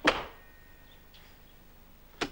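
A door being shut: one sharp thud right at the start that dies away quickly, followed by faint room tone.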